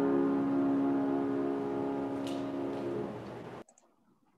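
Grand piano chord held and slowly dying away, cut off abruptly about three and a half seconds in.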